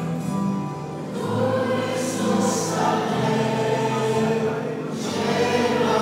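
Mixed church choir singing a hymn in Romanian, with held notes from an electric keyboard underneath.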